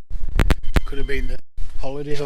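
Three sharp knocks in quick succession in the first second, then a brief stretch of a person's voice.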